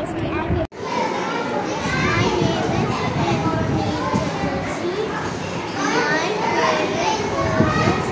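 Several children's voices talking over one another in a busy room, with a brief drop-out about half a second in.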